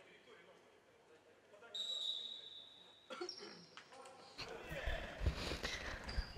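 A short steady whistle blast about two seconds in, typical of a referee's whistle restarting a futsal match. From about four seconds in, faint knocks of the ball being kicked on a hardwood sports-hall floor and players' footsteps, with the hall's echo.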